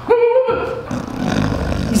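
A man's short effortful grunt, followed by scuffing and shuffling as a limp body in clothing is dragged across a floor.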